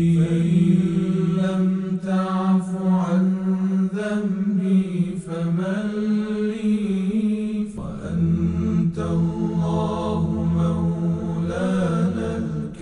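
Unaccompanied Arabic devotional chant (nasheed): a solo voice sings a melodic line over a steady low drone, with a deeper low layer joining about two-thirds of the way through.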